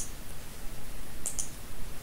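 Computer mouse clicks: one click at the start, then a quick double-click about a second and a quarter in, over a faint steady microphone hum.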